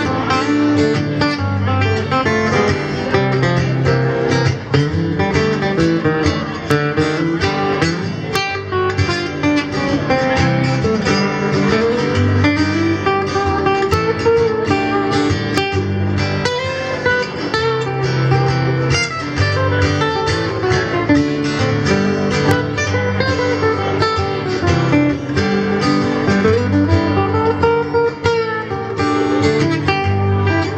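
Acoustic guitar strummed and picked through an instrumental break in a song, with no singing.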